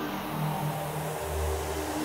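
Background music of sustained low notes that shift about half a second and a second and a half in, over a steady airy hiss.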